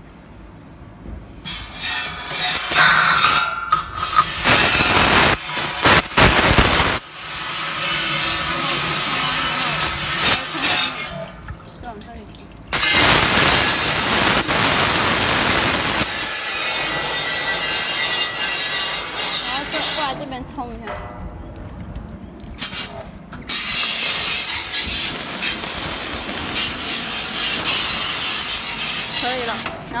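High-pressure water jet from a pressure-washer wand spraying onto a stainless-steel screw juicer. It comes in several long bursts of hissing spray with short pauses between them.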